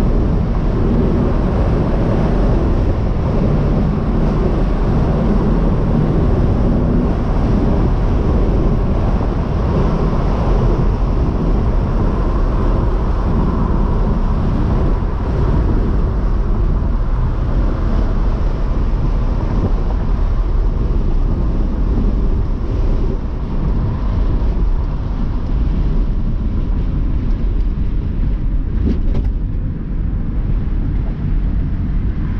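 Car cruising at road speed, heard from inside the cabin: a steady mix of engine, tyre and wind noise.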